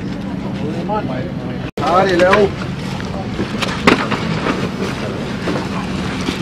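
Steady low hum of an engine running, under a man's short spoken phrases, with a couple of sharp knocks about four seconds in.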